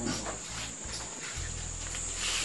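Steady high-pitched drone of insects in the background, over a low steady hum.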